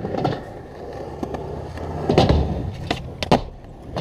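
Skateboard wheels rolling on concrete with a steady low rumble, broken by several sharp clacks of the board: the loudest about two seconds in and a sharp one near the end.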